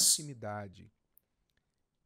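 A man's speaking voice trails off in the first second, then dead silence for the rest.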